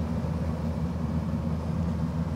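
An engine running steadily: a low, even drone that does not change.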